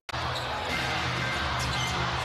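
Arena crowd noise with music playing over the PA, a steady bass line underneath, and a basketball bouncing on the hardwood court. It starts right after a short cut-out of the sound.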